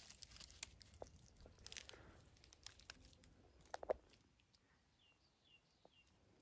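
Faint crackling and rustling of dry leaves and twigs as a hand picks through leaf litter, with a sharper crackle about four seconds in. Then near silence, with a couple of faint short high chirps.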